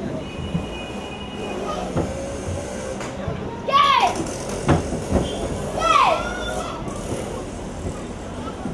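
Two sharp karate kiai shouts from young students, each a short cry that falls in pitch, about two seconds apart, with a thud between them, over steady chatter of a children's audience.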